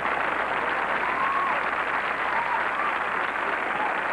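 Studio audience applauding and laughing at a comedian's punchline: a steady wash of clapping, with a few voices rising above it about a second in.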